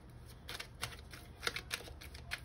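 A deck of oracle cards being shuffled by hand: a run of irregular, light clicks and flicks as the cards slap and slide against each other.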